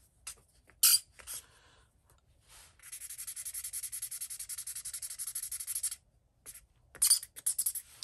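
Alcohol blender marker scrubbed back and forth over a pencil colour swatch on paper: a scratchy rubbing for about three seconds in the middle. A sharp click comes about a second in and a few light taps near the end.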